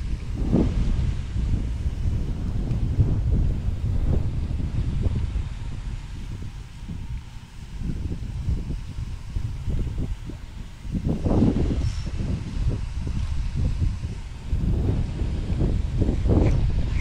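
Strong wind buffeting the microphone: a gusting low rumble that swells and eases.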